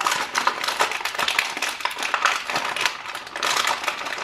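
Plastic wrapper of a roasted seaweed snack packet crinkling and crackling in a dense, irregular stream as it is worked open by hand.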